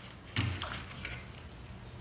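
Homemade slime being kneaded and lifted out of a plastic bowl by hand: one soft thud about half a second in, then only a faint steady room hum.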